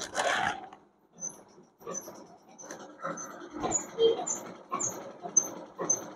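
Cloth fabric rustling and rubbing as a folded suit piece is handled and shaken open. Faint, short, high chirps repeat through it.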